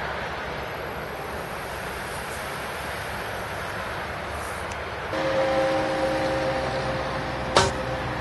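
Steady outdoor noise of wind on the microphone and road traffic. About five seconds in, a steady whine of a few tones joins in, and there is a single sharp click near the end.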